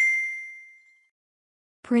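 A single bright ding, a bell-like sound effect that rings out and fades away over about a second.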